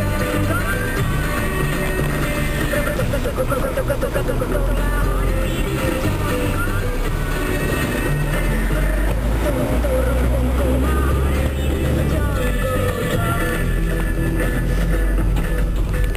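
A song with singing playing on the car radio, over the low, steady rumble of the car's engine and tyres, which grows stronger a few seconds in as the car drives off.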